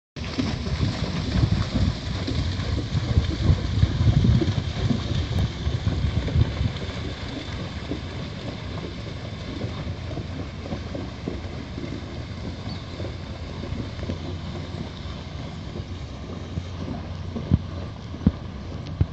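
Wind buffeting the microphone outdoors, a gusty low rumble strongest in the first several seconds, then settling into a steadier wash of noise, with a sharp knock near the end.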